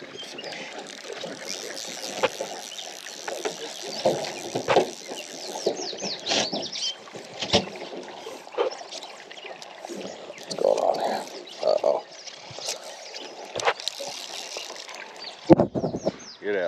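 Water sloshing against a drift boat's hull, with scattered sharp knocks and clicks throughout.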